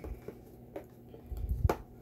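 A small cardboard product box handled in the hands: fingers tapping and rubbing on the card, with a few light clicks and one duller knock about one and a half seconds in.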